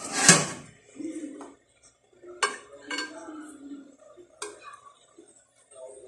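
A ceramic plate and cutlery being handled: a clatter at the start, then two sharp clinks about two and a half and four and a half seconds in.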